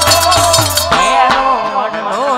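Live Indian devotional folk music: a melody sliding up and down over hand-drum beats, with small metallic percussion clinking on the beat. The drum drops out about halfway through.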